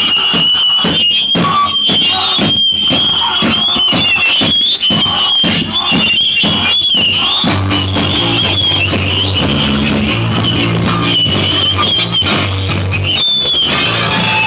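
Live rock band playing loudly. A high, wavering squeal, typical of guitar feedback, holds over repeated drum and cymbal hits for about the first half. Then a low, rhythmic bass-and-guitar riff comes in.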